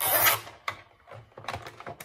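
A nylon zip tie being pulled through its catch: a short ratcheting zip right at the start, then a few light plastic clicks as it is worked tighter.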